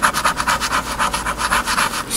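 Coin scraping the silver coating off a scratch-off lottery ticket in rapid, evenly spaced back-and-forth strokes.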